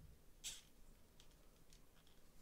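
Near silence, broken by faint clicks from the plastic shoulder and butterfly joints of a Mafex Daredevil action figure as they are moved by hand, the clearest one about half a second in.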